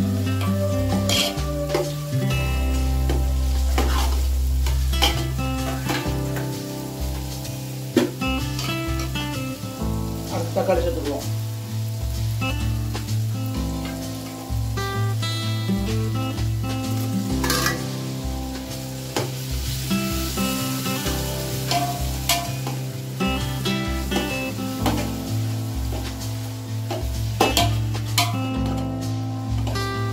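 Onions, green chillies and herbs frying and sizzling in an aluminium pot, stirred with a long metal spoon that clicks and scrapes against the pot. Chopped tomatoes go in around the middle. Background music with a bass line plays underneath.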